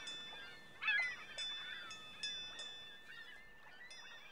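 Seagulls crying: about six short calls that grow fainter toward the end, over a faint steady high ringing tone.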